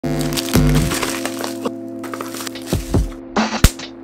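Grey duct-taped plastic package being handled, giving sharp cracking and crinkling clicks over background music with a steady low bass. A single loud crack comes just before the end.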